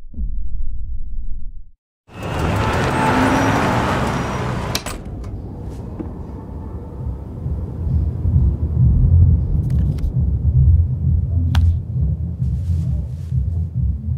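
A short low whooshing rumble, a brief drop-out, then a burst of hiss that fades over a few seconds into a steady low rumble with a throbbing bass. A few sharp ticks are scattered through it.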